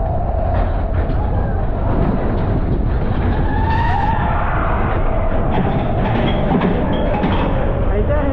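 Matterhorn Bobsleds car running along its tubular steel track, a steady heavy rumble of wheels on rail, with wavering higher tones over it and a brief rising sweep about halfway through.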